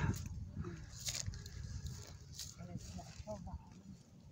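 Faint, indistinct voice with a few short rustles or clicks.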